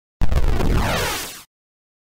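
A cinematic boom-and-whoosh sound effect: a sudden deep hit with a sweeping swoosh through it, fading out over about a second.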